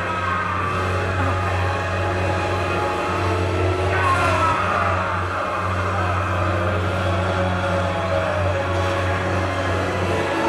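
Film-score music over a steady low drone, with sliding tones that fall in pitch about four seconds in.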